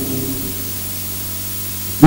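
Steady hiss with a low, even electrical hum: the background noise of the microphone and sound system in a pause between spoken phrases.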